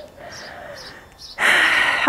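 A person's loud breath, about half a second long near the end, right before she speaks.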